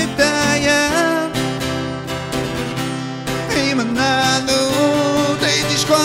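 A man singing in Innu-aimun, holding long notes that slide in pitch, over a strummed acoustic guitar.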